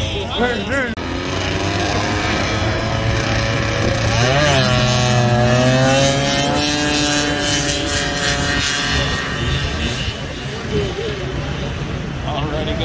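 Vintage two-stroke snowmobile engines launching in a drag race. About four seconds in, the engine note jumps up and climbs steadily for several seconds as the sleds accelerate down the track, then fades out.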